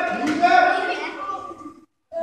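A group of children's high-pitched voices calling out together in drawn-out, rising tones, fading and then cutting off suddenly near the end.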